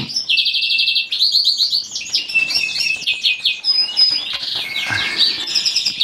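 Caged finches in a birdroom singing and chirping: fast trills and twittering from several birds at once.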